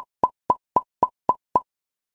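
A rapid run of identical short pop sound effects, about four a second and seven in all, stopping about a second and a half in.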